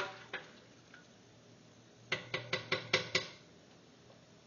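A spoon clinking against a metal stockpot of mole sauce: a couple of single knocks at the start, then a quick run of about seven ringing taps about two seconds in.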